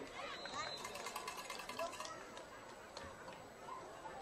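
Spectators at a football game chattering and calling out, many voices at once with no single speaker. A short, high, steady tone sounds about half a second in.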